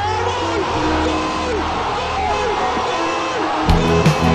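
A football commentator's long, drawn-out shout of "gol" over background music. Near the end a song with a heavy drum beat comes in.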